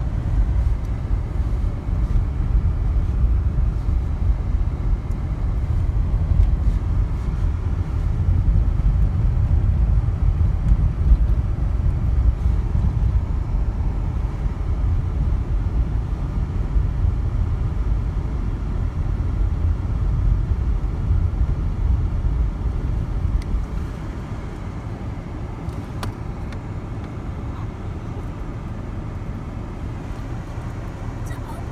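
Steady low rumble of a car's engine and road noise heard from inside the cabin, easing off and becoming quieter about 24 seconds in.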